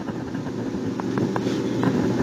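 Steady background hum, with a few faint taps of a pen writing on the page in the second half.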